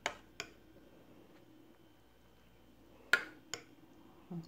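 A few short sharp clicks of a spoon against a bowl and plate as yogurt is scooped onto a pancake: two faint ones near the start and two louder ones about three seconds in, over quiet room tone.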